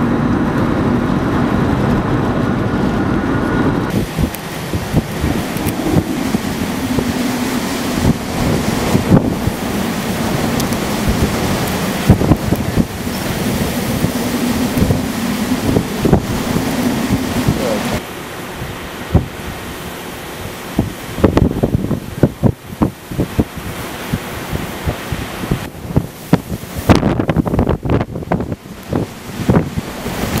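Car road noise for the first few seconds, then strong storm wind buffeting the microphone in loud, irregular gusts. The wind eases somewhat past the midpoint but keeps striking in sharp gusts.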